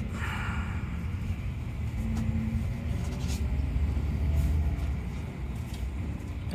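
Low, steady rumble of a double-decker coach's engine and running gear, heard from inside the cabin at low speed, swelling slightly past the middle.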